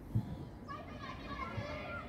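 Young footballers' shouts and calls, faint and high-pitched, from about a second in, with a single dull thump just after the start.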